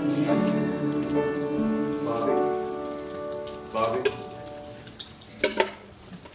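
A congregation finishing a hymn on a long held final chord that fades out about four seconds in. Scattered light clicks and crackles follow.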